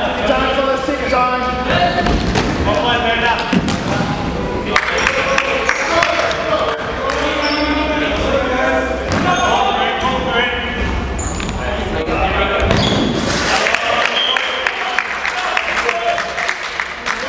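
Futsal ball being kicked and bouncing on a wooden hall floor, heard as repeated sharp thuds. Players' voices call out over them, echoing in the large hall.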